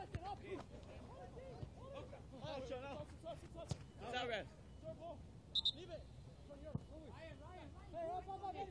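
Faint voices of players calling out across a soccer pitch, with a few sharp knocks.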